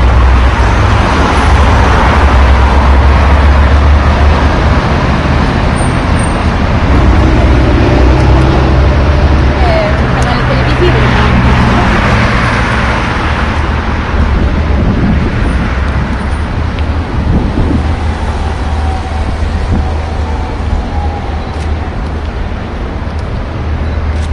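Road traffic noise from cars on a city street, under a loud, steady low rumble; it eases a little in the second half.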